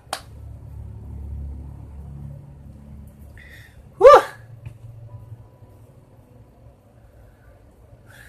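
A man's short wordless cry, falling in pitch, about four seconds in, the loudest sound here. A single sharp click right at the start and a low rumble over the first few seconds.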